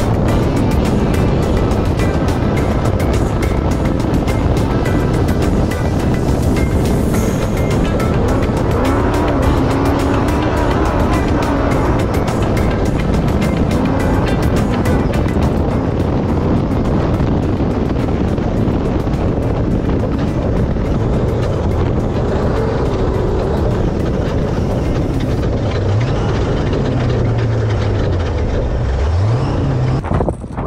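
An off-road buggy's engine and running gear, driven hard along a sandy desert trail, heard from on board, with music mixed in.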